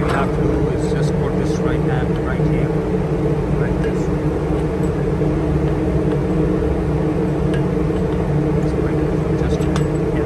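Steady machinery hum from a ship's running machinery, with a few held low tones, heard while the emergency generator itself is still stopped. A few faint metal clicks near the end as a steel crank bar is fitted into the generator's hand-cranking spring starter.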